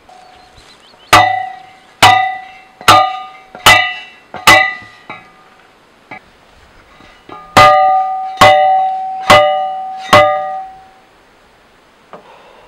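Manual steel post driver slammed down onto a fence post: nine ringing metallic clangs, about one a second, in a run of five and then, after a short pause, a run of four.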